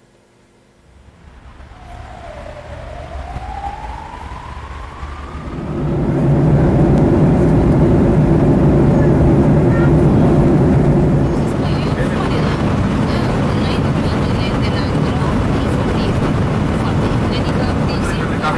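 Jet airliner engines spooling up, as on a takeoff roll: after a moment of near silence, a whine rises in pitch, and from about six seconds a loud, steady engine roar holds.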